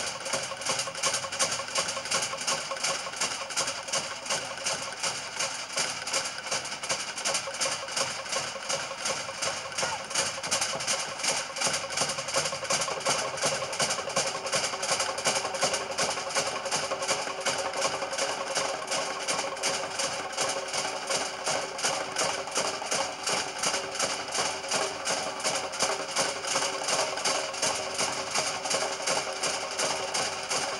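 Fast, steady drumming that keeps an unbroken beat of several strikes a second: the driving drum accompaniment to a Samoan fire knife dance.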